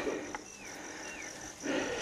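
Quiet outdoor background with two brief, faint, falling whistled chirps and a soft rustle near the end.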